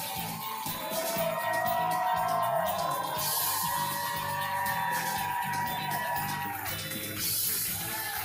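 A talk-show band playing the guest's walk-on music: sustained held notes over a steady low beat at an even level.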